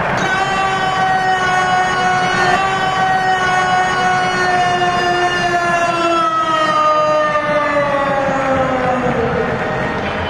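Arena goal horn sounding for a goal: one long, loud note that slowly sinks in pitch and drops away faster near the end, over crowd noise.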